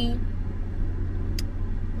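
Steady low rumble of a car cabin while driving, with one sharp click about halfway through.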